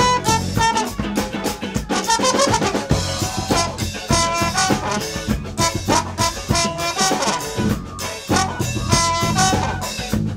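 Live funk-fusion band playing: a horn section with trombone in short, quick phrases over a drum kit and electric bass.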